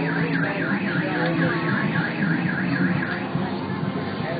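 Electronic siren tone warbling rapidly up and down, about three and a half sweeps a second, stopping a little before the end, over a low steady hum.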